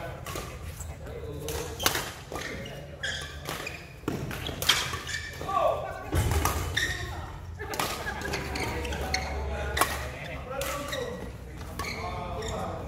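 Badminton rackets striking a shuttlecock: several sharp smacks a few seconds apart in a large sports hall, over players' voices and calls from around the courts.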